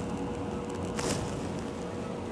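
Steady hum and air noise of hospital-room equipment, with a faint steady tone and a single soft click about a second in.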